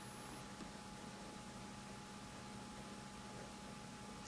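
Quiet room tone: a steady hiss with a faint low hum and a thin steady tone underneath, and no distinct sound standing out.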